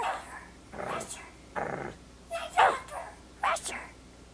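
A puppet dog from a children's TV show barking in a series of short yips, mixed with a toddler character's babbling voice, heard as the show's soundtrack.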